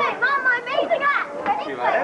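Children's high voices talking and calling out while they play.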